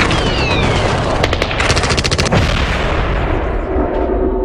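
Gunfire in rapid bursts, automatic weapons firing, for about the first two seconds; then a whoosh that dies away into a low music sting near the end.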